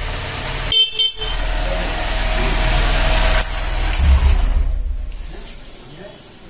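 A new Honda SP 125 motorcycle running, with its horn sounding in a long steady blast of about two and a half seconds starting about a second in.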